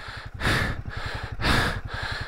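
A person breathing hard, three heavy breaths about a second apart, short of breath in the thin air at about 5,050 m. Underneath runs the low, steady beat of the Royal Enfield Himalayan 450's single-cylinder engine.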